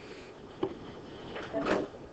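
Classroom room sounds with no one talking: a light knock a little over half a second in, then a louder brief noise near the end.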